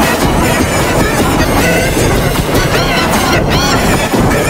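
A sung cartoon song played through heavy audio effects, so the voices and backing come out as a loud, dense, harsh wash.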